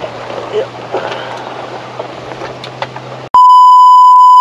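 Strong wind buffeting the microphone, with a few brief voice fragments. A little over three seconds in, a loud steady test-tone beep starts abruptly.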